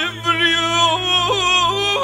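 Live Central Asian band music: an ornamented melody that wavers and steps from note to note, held over a steady low bass note from the keyboards.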